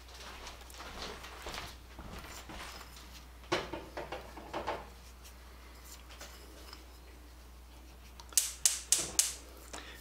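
Fingers pinching and scraping a dry spice mix out of a small ceramic bowl to sprinkle over raw chicken: a few soft clicks and scrapes partway through, then a quick run of sharper clicks near the end, over quiet room tone.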